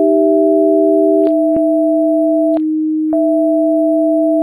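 Electronically generated pure sine tones sounding together as a steady chord of two or three pitches. Every second or so one tone cuts out or comes back abruptly with a short click, and for about half a second only the low tone is left.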